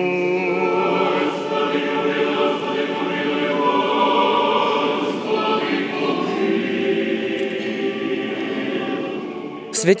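Orthodox church choir singing a slow liturgical chant, the voices holding long notes that ring on in the church.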